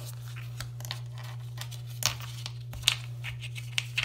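Gloved hands fumbling with snap-together plastic ball-mould halves on a paper towel: soft rustling and crinkling with a few light plastic clicks, over a steady low hum.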